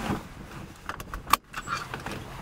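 Keys jingling and a few sharp clicks inside an old car, the loudest click about a second and a half in.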